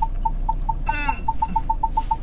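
Ford Focus parking-distance sensor beeping during a self-parking manoeuvre: short, identical single-pitch beeps that speed up from about four to about seven a second as the car reverses closer to the obstacle behind it. A short falling voice sound comes about a second in.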